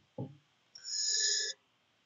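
A short electronic chime from the computer: several steady pitches held together for under a second, starting about three quarters of a second in and cutting off abruptly. A brief faint low sound comes just before it.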